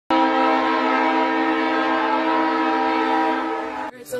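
Train horn sounding one long, steady blast that starts suddenly and cuts off after nearly four seconds.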